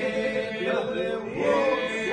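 A group of men singing a Lab (Albanian) polyphonic folk song. Several voices hold a steady drone while the leading voices bend and shift above it.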